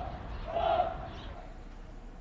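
Soldiers' voices shouting a drill count, 'yi, er, san' (one, two, three). One call comes about every second, and the calls stop about halfway through.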